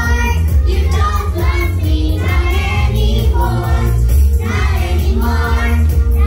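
A group of young children singing together over backing music with a strong, steady bass.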